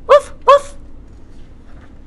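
A woman imitating a puppy's bark: two short, high-pitched woofs about a third of a second apart.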